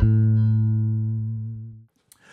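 Electric bass guitar played through a Bergantino Super Pre preamp set to a speaker profile for a single 15-inch cabinet. A last low note is plucked right at the start and rings out, fading steadily, then cuts off just before the end.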